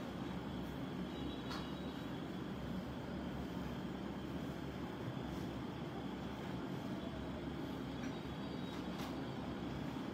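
Steady low rumble of room background noise, with a couple of faint ticks about one and a half seconds in and near the end.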